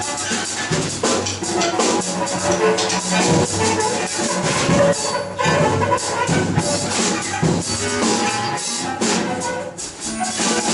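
Free-improvised jazz for two drum kits, cello and bass clarinet: a dense, busy clatter of drum and cymbal strokes, with short bowed cello and reed notes woven through it.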